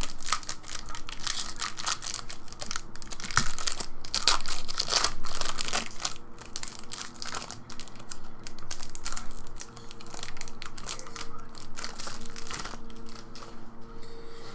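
Foil trading-card pack wrapper crinkling and tearing as it is opened by hand, in irregular crackles that are densest in the first half, with the cards being handled.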